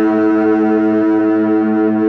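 Fender electric guitar with a chord held and left ringing, its notes sustaining steadily with no new strum.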